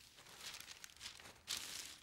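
A rustling, crinkling noise of something being handled or shifted, with a louder burst about one and a half seconds in.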